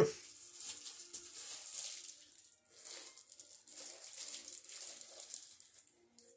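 Faint rustling and rattling of small packaged items being handled.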